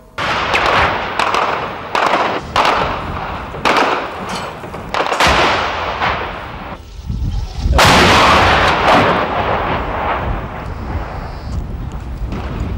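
Combat gunfire: a series of sharp shots through the first six seconds, then a longer, louder blast about eight seconds in that trails off into a rumble.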